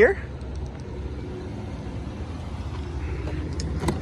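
Steady low outdoor rumble, with a few light clicks near the end.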